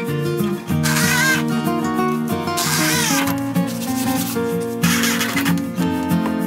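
Background instrumental music, over which a cordless drill drives screws into plywood in three short bursts: about a second in, around three seconds, and near the end.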